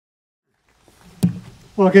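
Silence, then faint background comes up, with a single sharp knock about a second and a quarter in. Near the end a man starts speaking into a podium microphone ("Well good...").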